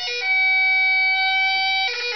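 Great Highland bagpipes played: the chanter holds one long steady note for about a second and a half over the drones, with quick fingered runs of notes just before and just after it.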